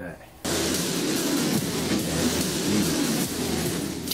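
A sudden, loud, steady rushing noise starts about half a second in and holds, with shouting voices mixed into it.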